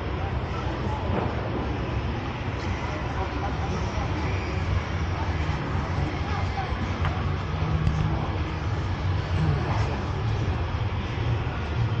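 Busy city-street ambience: a steady low rumble, with voices of passers-by talking.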